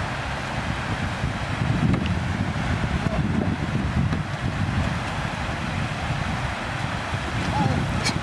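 Gusty wind noise on the microphone over the steady rush of water flowing down a concrete dam spillway.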